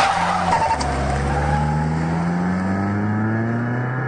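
A car pulling away hard: a short burst of skid-like noise, then the engine accelerating, its pitch climbing steadily.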